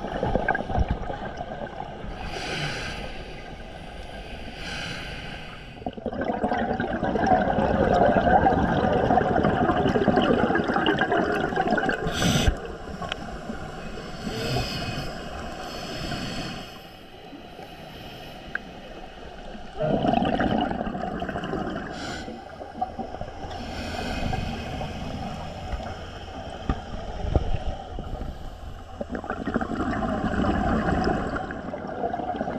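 Scuba diver breathing through a regulator underwater: short hissing inhalations alternate with longer, louder rushes of gurgling exhaled bubbles, several breaths in all.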